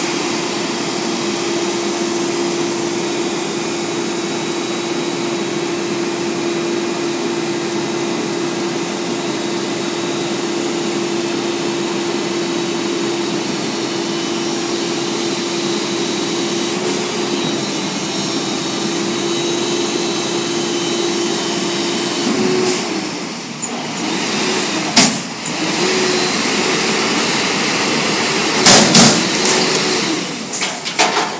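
Front-loader garbage truck (Peterbilt 320 with a McNeilus Atlantic Series body) running steadily with a held machine tone. After about twenty seconds the pitch swings up and down as the hydraulic arms lift the steel container overhead, with several loud metal clangs near the end.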